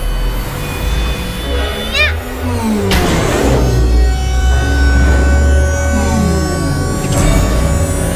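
Background music over a cartoon rocket-launch sound effect: a sudden burst about three seconds in, then a low, steady rumble as the spaceship lifts off.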